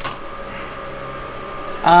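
Electric skateboard motors driven at 80 amps open loop by a FOCBOX Unity dual motor controller in a thermal current test: a steady hum with faint even tones.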